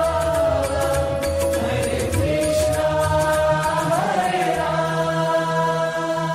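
Devotional background score: a chant-like melody of long held notes that slide between pitches, over a steady low drone.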